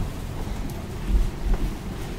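Low rumbling thumps on the microphone from a handheld camera being carried while walking, loudest a little after one second in.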